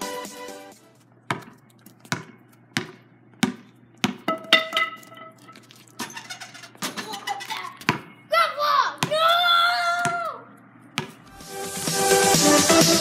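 A basketball dribbled on pavement in a slow, even rhythm, about three bounces every two seconds, with a person's drawn-out vocal sound near the middle. Electronic intro music fades out at the start and comes back in near the end.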